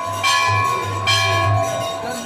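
A metal bell struck twice, about a second apart, each strike ringing on in long steady tones, over a low regular beat of music.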